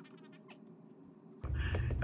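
Phone on speaker: faint high-pitched chirping sounds in a quiet room, then about a second and a half in a low hum from the phone's speaker comes on and a man's voice starts talking through it.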